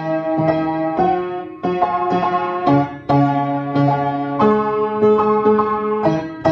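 Out-of-tune upright piano playing chords, each struck and held about a second before the next. The mistuned octaves sound gross.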